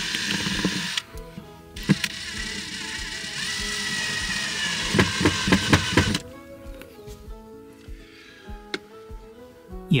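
Cordless drill running in two bursts into a van's wall panel: a short one of about a second, then a longer one of about four seconds with a slightly rising whine and a few clicks near its end. Background music plays throughout.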